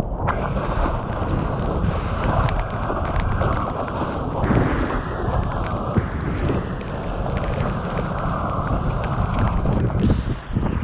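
Wind buffeting a mouth-mounted GoPro Hero 7 Black and water rushing under a surfboard as it rides along a breaking wave, a steady rough noise with faint crackles of spray.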